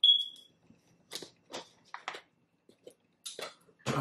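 A short, high-pitched tone at the very start, then a few scattered clicks and rustles of a plastic sauce cup and packaging being handled.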